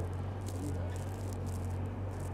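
Boom lift's engine running steadily as a low, even hum, under a faint outdoor noise haze with a few light ticks.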